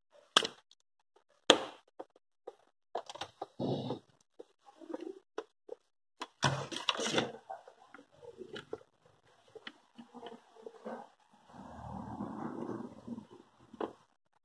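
Spring-loaded solder sucker (desoldering pump) firing with a sharp snap of its plunger, twice in the first two seconds, pulling molten solder off a capacitor's leads on a circuit board. Scattered clicks and knocks of the tools and the board being handled follow, with a louder cluster midway and a stretch of rustling near the end.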